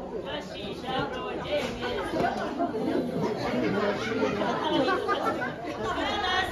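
Many people talking at once, overlapping conversation of a room full of party guests.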